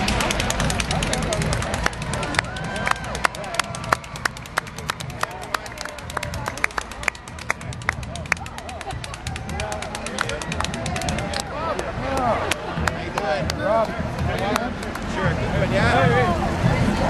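Spectators clapping close by: a quick, uneven run of sharp claps that thins out after about six seconds. Crowd voices carry on underneath.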